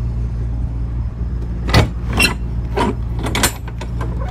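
Clanks and rattles of a refrigerated trailer's metal rear-door latch handles being worked, several sharp knocks in the second half. Underneath, the steady low drone of the trailer's running reefer refrigeration unit.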